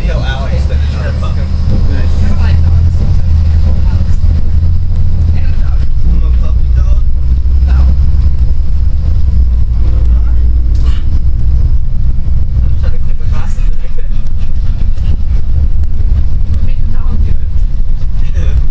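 Bus engine and road noise heard from inside the cabin: a loud, steady low rumble that grows louder about two seconds in.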